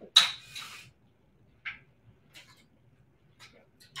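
A sharp plastic clatter as a plastic water bottle is set down on a stool seat, followed by a brief rustle. Then come a short knock about a second and a half in and a few faint taps.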